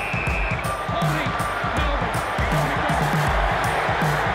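Background music with a steady beat, and a brief high whistle-like tone right at the start.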